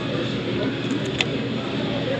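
Restaurant dining-room background noise: a steady murmur with a single short click about a second in.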